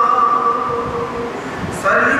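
A man's voice holding one long, slightly wavering sung note in a religious recitation, with a new phrase starting near the end.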